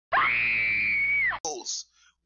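A woman's single long, high scream that rises at the start, holds for about a second, then drops and stops; a brief vocal sound follows.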